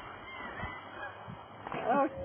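Honking bird calls, goose-like, over open-air background noise, with one louder call near the end.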